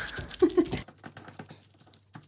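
A short laugh in the first second, then faint, quick, irregular crinkling and patting as fingertips press and scrunch thin, glue-wet sewing-pattern tissue paper into wrinkles.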